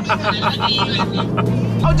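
Sports car engine droning steadily at cruise, heard inside the cabin, under background music. Near the end the drone changes to a higher steady pitch as a voice begins.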